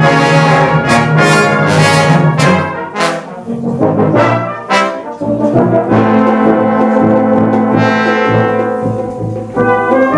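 A full brass band playing: loud accented chords in the first three seconds, then a few short stabbed chords. A softer held chord follows, swelling at the top, before the whole band comes back in loudly near the end.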